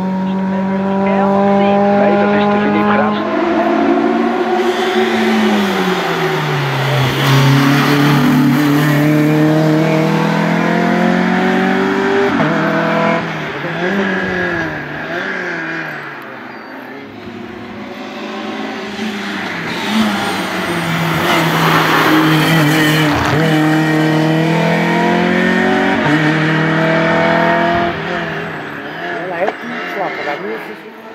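Renault Clio racing cars driving hard up a hillclimb one after another, their engines revving high. The pitch climbs and drops repeatedly through gear changes and lifts for the bends, and the sound dips about halfway through before the next car comes up loud.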